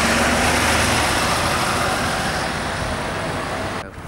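Mercedes-Benz Citaro single-deck bus driving past and pulling away: a low engine hum for about the first second, then engine and road noise fading slowly as it goes, cut off suddenly near the end.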